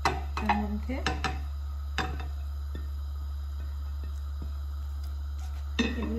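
A ceramic plate knocking against the rim of a nonstick frying pan as noodles, grated carrot and prawns are tipped off it, with several sharp clatters in the first two seconds, followed by a few light taps of a silicone spatula in the pan. A steady low hum runs underneath.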